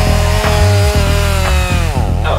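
A chainsaw sound effect, its engine note holding steady and then dropping away near the end, over background music with a steady beat. The saw itself is not running; the engine sound is a stock effect dubbed on.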